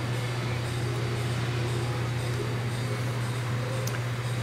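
Steady low hum with a faint even hiss: the room's air conditioning running.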